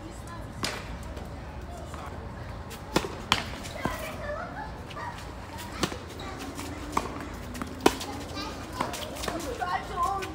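Tennis balls struck by racquets and bouncing on a hard court during a doubles point: a string of sharp pops about a second apart, including a serve about six seconds in, the loudest pop about eight seconds in. Faint distant voices in the background.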